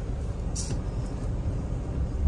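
Low, steady rumble of a car heard from inside its cabin, with one short high hiss about half a second in.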